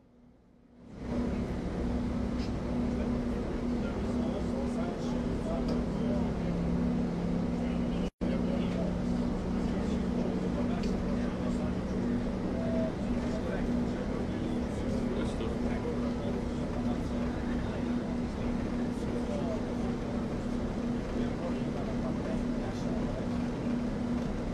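Interior of an airport bus: a steady engine drone with a low hum, starting about a second in, with the sound cutting out for an instant about eight seconds in.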